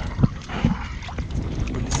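Wind buffeting the microphone as a steady low noise, with two short soft thumps in the first second.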